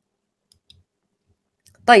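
Near silence broken by two faint, short clicks about half a second in, then a woman's voice at the very end.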